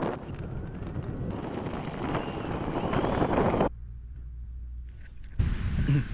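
Wind buffeting the camera microphone while riding an e-scooter: a rough, rushing noise that cuts off abruptly about two-thirds of the way in, leaving a quieter low hum.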